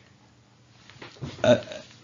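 About a second of faint room tone, then a man's hesitant, drawn-out "uh" in a pause in his talk.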